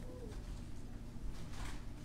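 A soft wavering coo-like tone fades out just after the start. About one and a half seconds in comes a brief rustle from a small object being handled, over a steady low hum.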